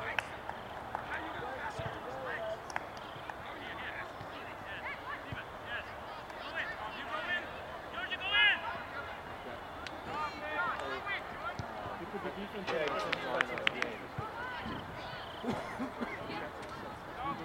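Scattered shouts and calls from players and spectators across an open soccer field, with one loud, high-pitched shout about eight seconds in. A few sharp knocks come near the end.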